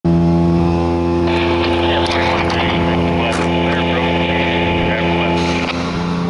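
Diesel engine of a fiber-installation work truck running at a steady, unchanging speed. A hiss joins in about a second in and stops shortly before the end, with a few sharp knocks.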